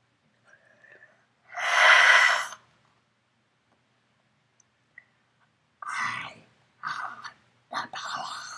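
A person breathing out hard close to the microphone, about a second and a half in, for about a second. Near the end come three short, softer breathy sounds.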